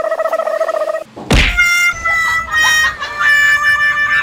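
A quivering, held tone for about a second, a brief whoosh, then a drawn-out rooster crow sound effect that carries past the end, stepping through several held pitches.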